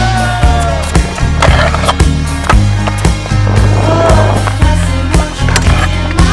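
Music with a steady beat and bass over a stunt scooter being ridden: wheels rolling on paving, with two longer scraping passes, about a second and a half in and around four seconds in.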